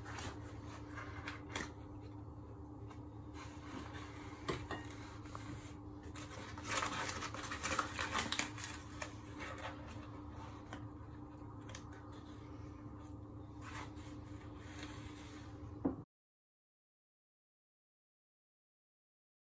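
A paper bag of flour being opened and handled: quiet crinkling, rustling and small clicks over a steady low hum, busiest about seven seconds in. The sound cuts out abruptly to total silence near the end.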